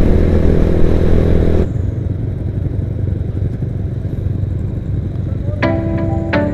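Honda motorcycle engine running steadily under way with loud wind noise on the mic, cut off abruptly under two seconds in; a quieter low rumble follows, and music notes begin near the end.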